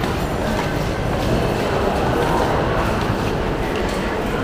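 Steady, loud hubbub of a busy indoor shopping mall: a dense murmur of crowd noise echoing in the hall, with no single sound standing out.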